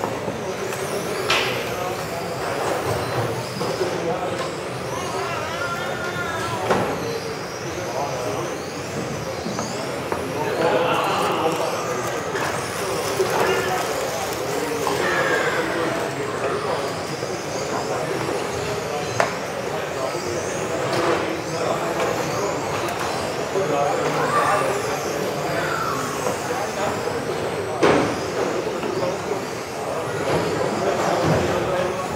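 Several electric RC touring cars racing laps: high motor whines rise and fall as the cars speed up and brake, over voices in the hall. There are a few sharp knocks, the loudest near the end.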